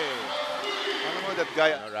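Basketball arena crowd noise under a male play-by-play commentator's voice. The commentator's voice trails off at the start and picks up again near the end, right after a made three-pointer.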